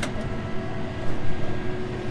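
John Deere 6155R tractor's six-cylinder diesel running steadily as it drives a wing topper through grass and rushes: a steady drone with a faint steady whine above it. A sharp click sounds right at the start.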